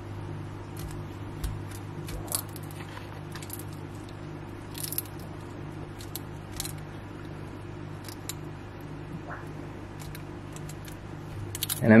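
Monitor lizard biting and crunching a live yabby (freshwater crayfish) in its jaws: scattered short sharp cracks and clicks of the shell, spaced irregularly a second or so apart.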